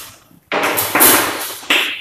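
Chalk scraping and tapping on a chalkboard as letters are written, in two bursts of strokes: a longer one starting about half a second in and a short one near the end.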